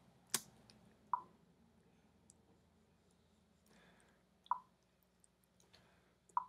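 A few faint, separate clicks of a computer mouse as the brush is worked: one sharp click about a third of a second in, then shorter clicks about a second in and at about four and a half seconds.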